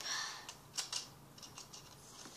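Plastic drinking straw being jabbed and worked into the neck of a small plastic milk bottle. There is a short scraping hiss, then two sharp plastic clicks a little under a second in, followed by a few lighter ticks.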